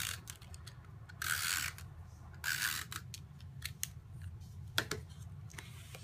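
SNAIL tape runner laying adhesive on the back of a cardstock panel: two short scratchy strokes about a second apart, with light clicks between.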